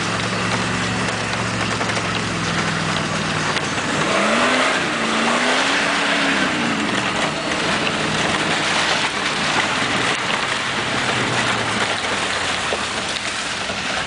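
A 4x4's engine running as it drives through mud, revving up and back down once about four seconds in, under a steady hiss of rain and tyres.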